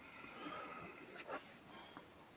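A person's faint breathing picked up by a call microphone, with one short, louder breath a little over a second in.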